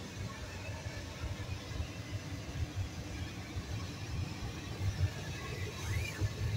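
Low, uneven rumble with handling noise from a phone camera being moved about inside a van cabin.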